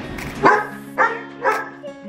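Small pet dog barking three times, about half a second apart, agitated by strangers in the house.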